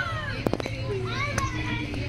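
Children's high voices calling out as they play on a playground, with two sharp clicks, one about half a second in and one near a second and a half, over a steady low hum.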